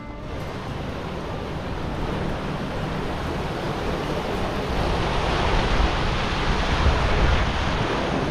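Rushing river water churning through narrow water-carved rock channels and potholes, a steady roar that grows louder as the camera nears it, mixed with wind buffeting the microphone.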